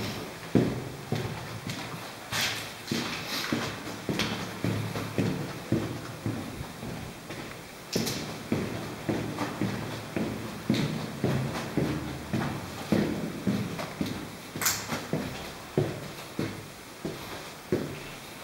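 Footsteps walking steadily along a hard corridor floor, about two steps a second, with a few sharper crunches and clicks from debris underfoot.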